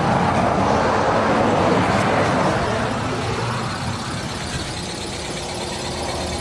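Road traffic noise: a motor vehicle passing close by. It is loudest at the start and fades over the next few seconds into a steady rumble.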